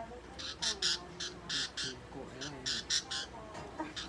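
Budgerigar held in the hand giving a rapid, irregular series of short harsh squawks, about three a second, with fainter warbling chatter between them.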